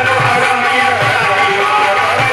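Qawwali music: a hand drum keeps a steady beat under sustained harmonium-like tones and singing voices.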